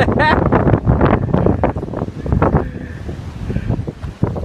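Wind buffeting the phone's microphone with a rumble, over uneven sloshing as bare feet wade through ankle-deep floodwater. A short voice sound comes right at the start.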